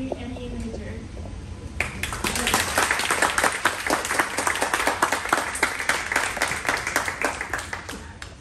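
A small audience applauding, starting about two seconds in and stopping at the end, with single claps standing out; a woman's voice is heard briefly at the start.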